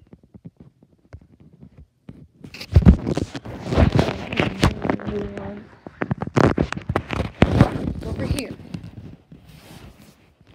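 Loud rustling, scraping and knocking right on a phone's microphone as the phone is handled with its lens covered. It starts about two and a half seconds in and runs for several seconds, with a brief steady pitched sound in the middle.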